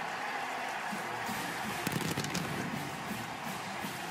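Steady stadium crowd noise, a continuous even din, with a few faint voices in it around the middle.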